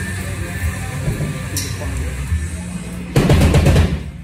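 Heavy metal band playing live: a low, sustained distorted guitar and bass drone, then near the end a much louder burst of rapid drum hits with the full band that stops abruptly.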